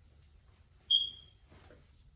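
A single short high-pitched ping about a second in, sharp at the start and fading away within half a second, over faint room tone.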